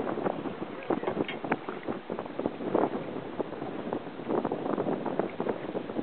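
Wind buffeting the microphone over water sloshing and slapping against a small boat's hull, with scattered irregular knocks.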